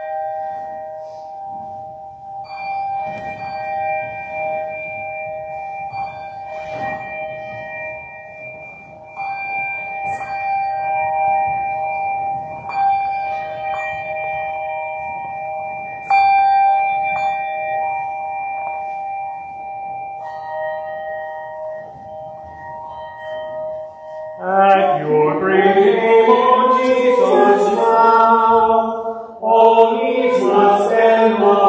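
Pipe organ holding long, steady chords that change only now and then; about 25 seconds in, voices join in singing a hymn with it, louder than the organ alone.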